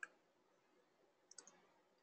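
Near silence with faint short clicks: one at the start and another about a second and a half in, the clicks of advancing a presentation slide.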